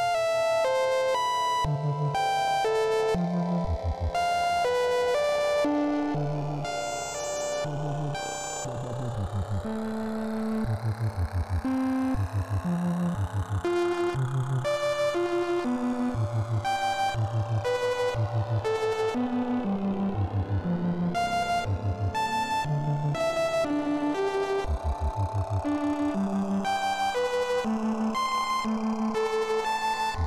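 VCV Rack software modular synthesizer playing a melodic drone: short synth notes step through changing pitches over sustained tones, with a slow sweep rising and falling through the sound.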